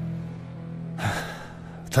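A man takes one short, audible breath about a second in, over a steady low music drone.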